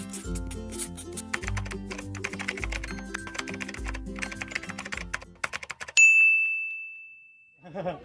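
Rapid computer-keyboard typing clicks over light background music with a bass note repeating about once a second, then the music stops and a single bright bell ding rings out, fading over about a second and a half.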